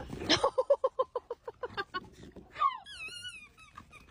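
Dogs vocalizing in rough play: a quick run of short pitched yips, about eight a second, then one long wavering whine.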